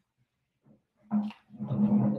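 Rustling and handling noise on a video-call microphone as someone moves up close to it: a short burst, then a longer rough one about a second and a half in, carried with a low steady hum.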